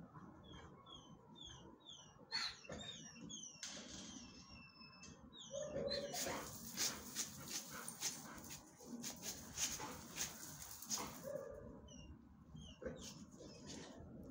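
Two dogs playing. Short high chirps sound in the first few seconds and again near the end. In the middle come several seconds of rough, rasping noise in quick pulses.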